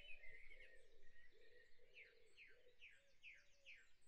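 Near silence, with faint, repeated high chirps like a small bird's, about three a second, most regular in the second half.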